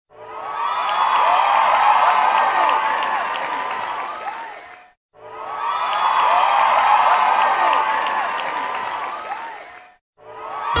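Large crowd cheering and screaming, with many high shrieks and whoops overlapping. The same five-second stretch of cheering plays twice, each time fading in and then fading out.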